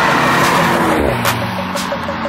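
A car driving past on a wet road, its tyres hissing on the asphalt, over intro music with a beat.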